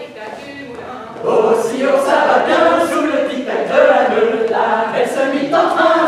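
Group of voices singing a French dance song unaccompanied, with no instruments: softer at first, then the full group comes in much louder about a second in.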